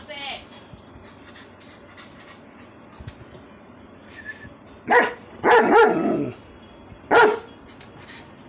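Dog barking: a short call right at the start, then three loud barks about five to seven seconds in, the middle one drawn out and falling in pitch.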